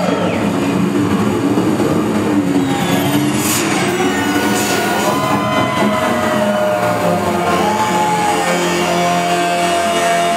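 Live rock band playing loudly: electric guitar over drums and bass, with long held notes in the second half.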